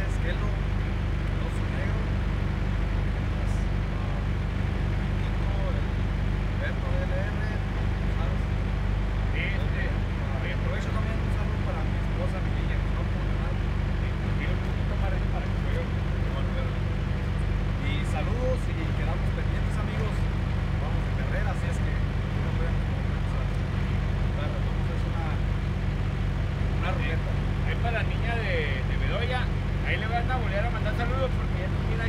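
Steady low drone of an idling diesel truck engine, unchanging throughout, with faint voices in the background.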